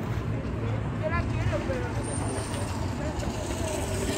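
A steady low rumble with faint voices of people in the background.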